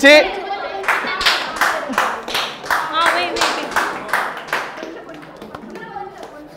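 Rhythmic hand clapping by a group, about three claps a second, with voices calling over it; it dies away about five seconds in.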